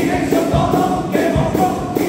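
A carnival comparsa's male chorus singing in harmony over a steady beat of drum strokes.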